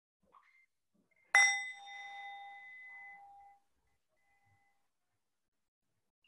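A meditation bell struck once, about a second in, ringing clearly with a few steady tones that fade away over about two seconds, marking a period of silent reflection.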